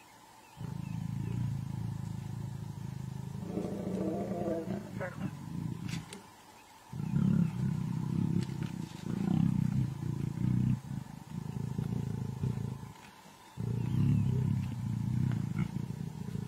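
Lions growling low in long bouts of several seconds, broken by brief pauses, around a mating pair and other males.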